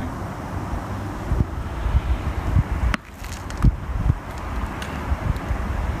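Wind buffeting the microphone throughout, with a single sharp click about three seconds in as a seven iron strikes a tennis ball off tarmac.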